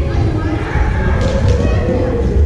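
Indistinct voices of several people echoing in a large gymnasium over a steady low rumble, with a couple of faint sharp ticks past the middle from shuttlecocks being struck by rackets.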